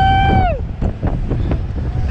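A rider's high, held scream that breaks off about half a second in, then wind buffeting the microphone as the bungee ride's capsule flies through the air.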